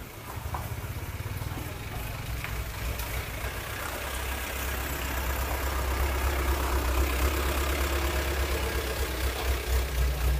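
A motor vehicle engine running at idle, a steady low rumble that grows louder about halfway through.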